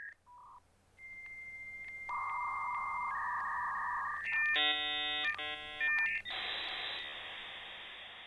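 Dial-up modem handshake: a steady high answer tone broken by regular clicks, a changing pair of lower tones, a brief chord of many tones at once with a short gap, then a hiss of noise that fades away near the end.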